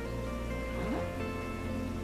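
Soft background music with sustained chords; the low notes change about a second in.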